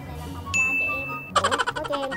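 An edited-in ding sound effect over background music. A thin steady high tone sounds for under a second, then about halfway through comes a bright, sparkling ding flourish, the loudest part.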